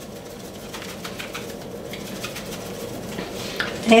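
A shaker of Cajun seasoning being shaken over a glass dish of cut bell peppers: a run of light, quick, irregular ticks.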